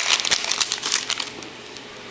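Trading-card pack wrapper crinkling as it is peeled apart and pulled off the cards. The crinkling dies down after about a second and a half.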